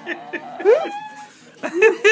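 A girl with severe cerebral palsy giving a high vocal squeal that rises steeply in pitch and is held briefly, followed near the end by a shorter voiced sound; part of her giggling during the treatment.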